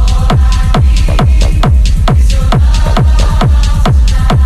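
Hard techno track: a fast, steady kick drum, each hit sliding down in pitch, under a repeating synth line.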